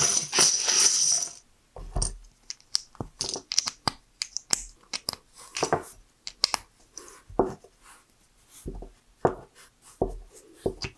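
Loose plastic LEGO bricks pouring out of a plastic bag onto a pile in a dense rattling clatter that stops about a second and a half in. After that come scattered sharp plastic clicks as bricks are snapped together into stacks, with a few dull knocks as the stacks are set down on the table.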